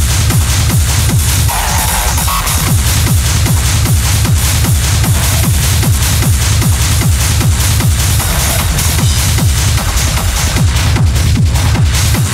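Hard techno mix playing loud: a steady driving kick drum with heavy bass and dense, hissy high percussion over it.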